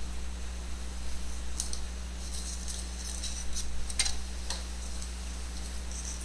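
Small scissors snipping through a thin sheet of Depron foam: a scattering of short, crisp snips, the strongest about four seconds in, over a steady low electrical hum.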